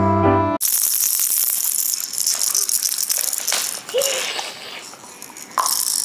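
Hard plastic toy rattle being shaken, a dense, busy rattling of loose beads. It eases off for a second or so near the end, then picks up again. Background music cuts off just after the start.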